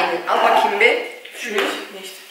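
Plates and cutlery clinking and clattering on a kitchen counter, with a sharp clink right at the start, over low voices.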